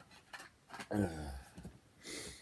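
A man's brief murmured word about a second in, with faint scattered ticks and rustles of small objects being handled around it.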